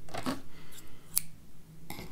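addi Click Novel interchangeable circular knitting needles clicking as stitches are worked and the yarn is tugged snug: a few short, sharp clicks, the sharpest about a second in, with some soft yarn rustle near the start.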